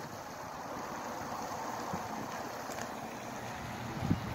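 Steady, even rushing outdoor background noise with no distinct events.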